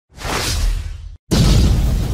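Logo-intro sound effect: a whoosh swells for about a second, cuts off, and is followed by a sudden heavy impact with a low boom that rings on and slowly fades.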